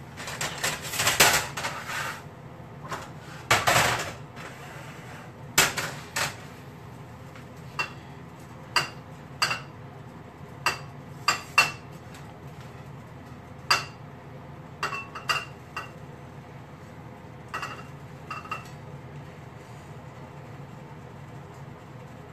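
A utensil scraping and knocking against a metal skillet as food is scraped out of it into a bowl. There are a few longer scrapes in the first four seconds, then a scatter of sharp clinks, some with a brief metallic ring.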